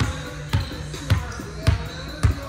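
A volleyball bounced repeatedly on a hardwood gym floor: four bounces about half a second apart.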